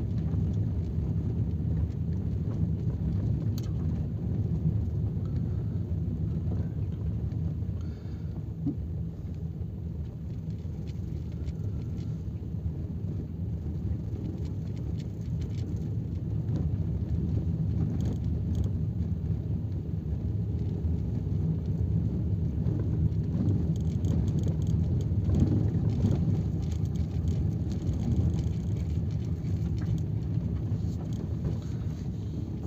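A safari vehicle's engine running as it drives along a forest road at night, a steady low rumble with road noise that dips slightly for a few seconds about a third of the way in.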